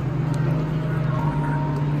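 Steady low hum of room ambience, with a faint murmur of voices in the background.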